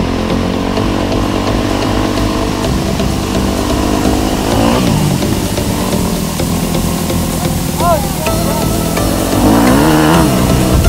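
Dirt bike engine running under throttle on a trail ride, its revs rising briefly about halfway through and again near the end.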